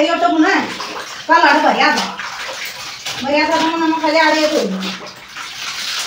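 Clothes being washed by hand in a tub of water: wet fabric sloshing and splashing as it is kneaded and squeezed. A woman talks over it in several short stretches, and the water noise alone fills the pause near the end.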